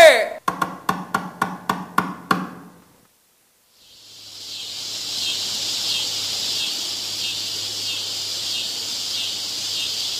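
A quick run of about nine knocking strikes with a low note, lasting about two and a half seconds and then cutting out. About four seconds in, a steady chorus of chirping insects, a forest night ambience, fades in and holds.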